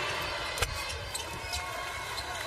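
A basketball bouncing once on the hardwood court about half a second in, over steady arena crowd noise, with a few fainter short ticks afterwards.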